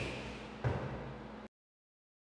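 Faint room tone with a single soft, low thump about two-thirds of a second in; the sound then cuts off abruptly to silence.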